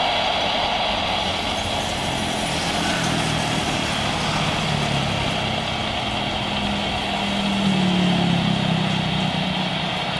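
Jet engines of a Boeing 737 on landing rollout, a steady rushing noise over a low drone. The drone grows louder about eight seconds in.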